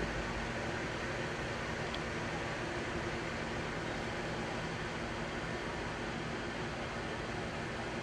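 Steady background noise with a faint low hum, even in level throughout.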